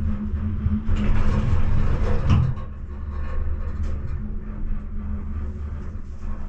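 Enclosed gondola cabin running along its cable: a steady low hum with a faint steady tone above it, and a louder, rougher rumble from about one second in, peaking a little after two seconds before settling back.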